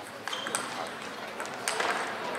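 Table tennis ball struck back and forth by rubber-faced paddles and bouncing on the table in a fast rally: a quick series of sharp clicks, about five in two seconds.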